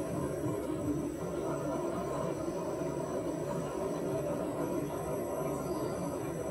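Microwave oven running with a steady hum.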